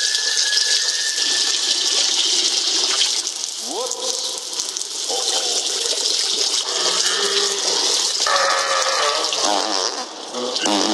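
A long, loud stream of urine splashing into a toilet, carried over a public-address system from a forgotten lapel microphone. A man's pitched vocal sounds of relief come and go over the steady splashing.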